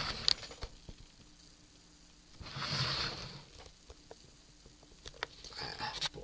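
A person's breathy exhale, like a sigh, lasting under a second about two and a half seconds in, preceded by a couple of small clicks near the start.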